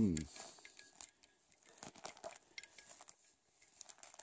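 A bare hand pulling apart a clump of soil and dry grass roots: faint, irregular crumbling, rustling and small crackles.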